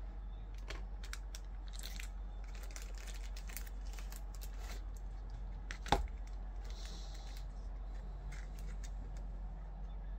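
Light handling noise from paper or plastic being worked by hand: scattered soft clicks and brief rustling, with one sharp click about six seconds in, over a steady low hum.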